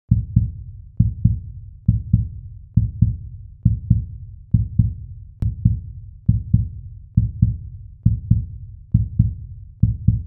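Heartbeat sound effect: low, deep double thumps (lub-dub), about one pair a second, each fading quickly, with a faint click near the middle.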